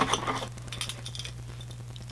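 Faint clicks and taps of small objects being handled, over a steady low electrical hum.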